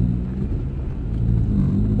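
Car engine and road noise heard from inside the cabin while driving, a steady low hum.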